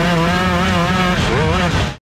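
Grass-track racing kart engine running at high revs, its pitch wavering, dipping about a second in and climbing again. It cuts off just before the end.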